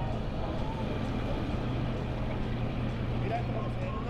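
Idling engine: a steady low hum under an even wash of outdoor background noise, unchanging throughout.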